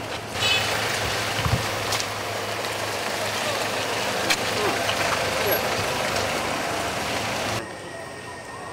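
A van's engine and road noise as it drives off close by, with scattered voices of people around it. The sound cuts off suddenly about half a second before the end.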